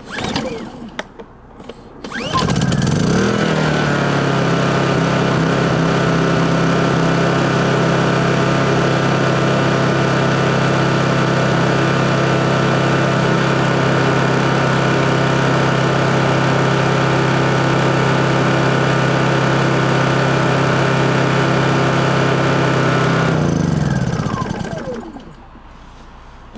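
Honda EU2200i inverter generator's single-cylinder engine, running on propane, pull-started. It catches about two seconds in with a brief rise in pitch and then runs at a steady speed. Near the end it slows with falling pitch and stops as it burns off the last propane in the line after the tank valve is closed.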